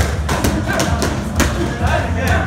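Boxing gloves striking pads: three sharp thuds, the loudest near the end. Background music with a steady bass runs underneath.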